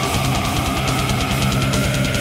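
Heavy metal band recording: distorted electric guitars and fast, dense drumming, with one long held high note running through.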